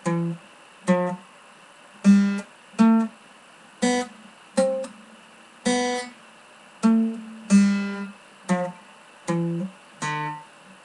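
Guitar played with a pick by a self-taught beginner: about eleven short picked chords and notes, roughly one a second in a halting, uneven rhythm, each cut off quickly.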